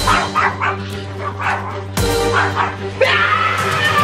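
Pet dog barking and yipping in several short bursts, with a longer run of yelps in the last second, over steady background music.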